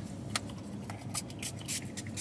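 Several short spritzes from a small Sol de Janeiro fragrance mist spray bottle, each a brief high hiss.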